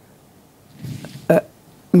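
A man's voice pausing between phrases: a short, low, throaty sound about a second in, then a single clipped syllable and the start of speech again near the end.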